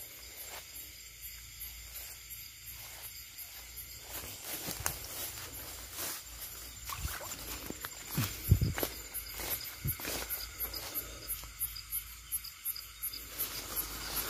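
Crickets and other night insects chirping in a steady, rapid pulse, over footsteps and rustling through brush and leaves. A low thump comes about eight seconds in.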